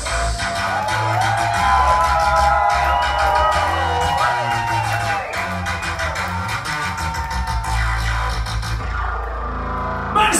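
Industrial rock band playing live, loud: electric guitar notes bending and sliding over steady bass notes and a regular beat. The beat drops out about a second before the end, leaving the bass sounding as the song closes.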